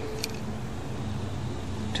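Steady low background hum and noise, with one faint click about a quarter second in.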